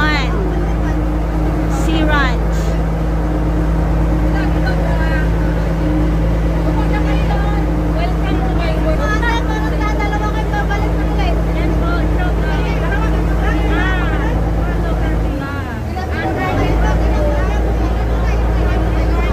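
Engine of a small sampan water taxi running steadily under way, a constant low hum. About fifteen seconds in the engine note dips briefly, then picks back up.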